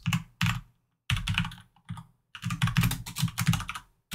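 Typing on a computer keyboard: quick bursts of keystrokes with short pauses, the longest run of keys near the end.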